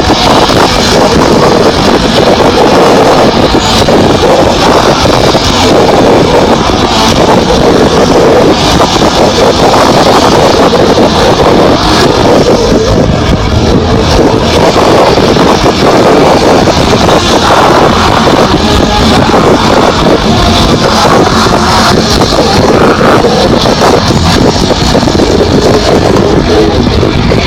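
Live death metal band playing at full volume, picked up by an overloaded mobile phone microphone in the mosh pit: a continuous, heavily distorted wash of sound in which the music is barely recognisable.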